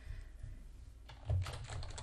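Computer keyboard typing: a short run of keystrokes, starting about a second in, as a short word is typed.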